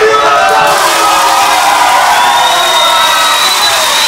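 Wrestling arena crowd shouting and cheering loudly, many voices at once. From about a second in, a long high whistle sounds over it, rising slightly in pitch.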